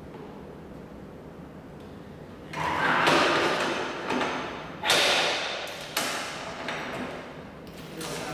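Vise on a dry-cut metal saw being worked by hand: the steel jaw slides along its base with two scrapes, the first about two and a half seconds in and the second about five seconds in, then a short click.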